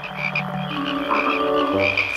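A chorus of many frogs croaking at once, several overlapping croaks with a quick repeating chirp above them.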